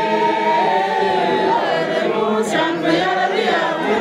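A church congregation of mostly women's voices singing together, with one high note held for about the first second and a half before the voices move on.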